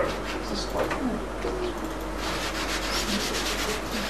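Chalk scratching and tapping on a chalkboard as a word is written, busiest about two to three seconds in.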